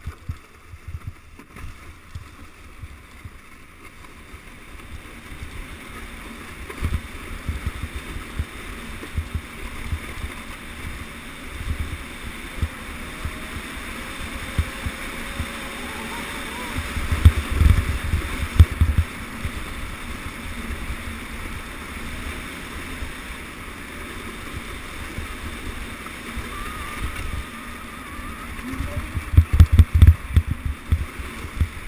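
Plastic sled sliding fast over packed snow: a steady scraping hiss that builds as it picks up speed. Irregular low thumps and rumble run through it, heaviest about two-thirds of the way in and again at the end, as the sled rides over bumps.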